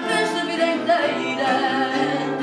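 A woman singing fado in full voice, her held notes wavering with vibrato, accompanied by a Portuguese guitar and a classical guitar.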